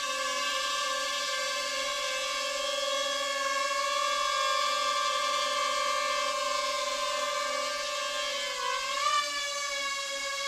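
Ryze Tello mini quadcopter drone hovering just after take-off, its propellers giving a steady high whine. Near the end the pitch dips and then rises sharply as the motors change speed.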